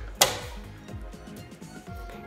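A single sharp click about a fifth of a second in, from the small metal wire cutters used to trim beading wire, over soft background music.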